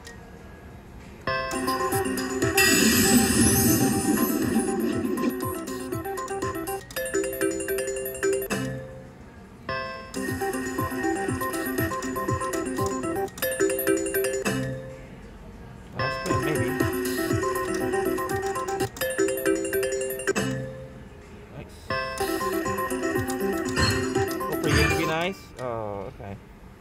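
IGT Megabucks Emerald Sevens video slot machine playing its electronic spin melody and chimes over several spins in a row, each a few seconds long with short quiet gaps between. One spin pays a small 32-credit win.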